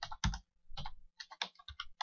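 Typing on a computer keyboard: a short, uneven run of keystrokes.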